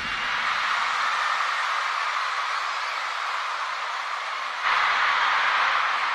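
Concert crowd cheering and screaming as a song ends, a steady high-pitched roar that swells about two-thirds of the way through.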